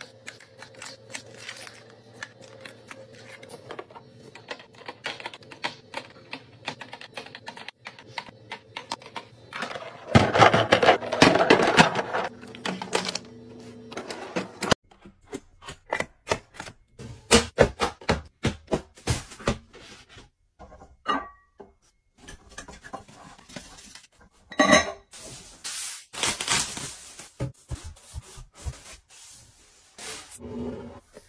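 Close-up handling of plastic packaging: fruit squeeze pouches set into a clear plastic bin, with a dense, loud stretch of rustling and clicking about ten seconds in. After an abrupt change about halfway, there are sharp plastic clicks as a light bar is slotted into its charging base, then loud crinkling of plastic wrap near the end.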